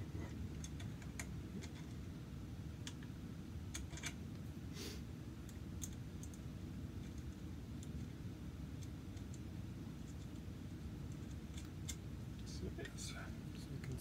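Small metal parts of a pneumatic rifle's breech clicking and tapping together as they are fitted by hand: scattered light clicks over a steady low hum.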